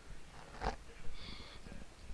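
A man's short sniff about half a second in, followed by a faint brief hiss.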